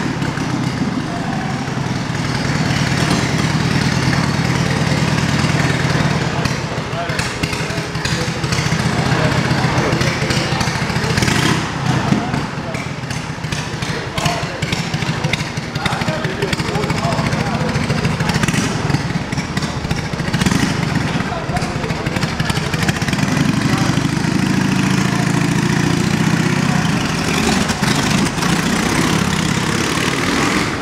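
1926 Indian Scout V-twin motorcycle engine running loud and steady inside the wooden drome, its note swelling as it is revved near the end.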